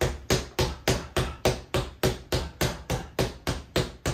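Fists striking a Quiet Punch doorway-mounted punching pad in a rapid, even run of jabs and crosses, about four hits a second, each a sharp knock.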